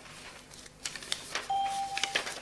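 Electronic voting system's beep: one steady electronic tone, under a second long, starting about a second and a half in, likely signalling the close of the vote. Before it come a few light clicks and paper rustles.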